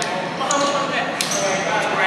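Players' voices echoing in a large sports hall, with two sharp knocks about a second apart and a thin high tone near the end.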